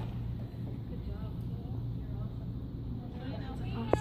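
Low murmur of scattered audience voices over a steady low hum, with one short sharp click near the end.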